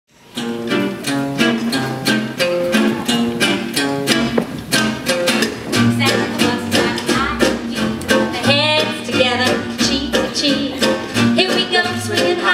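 Live swing band playing an up-tempo intro: a steady chopped chord beat at about three strokes a second, with a wavering melody line coming in about eight seconds in.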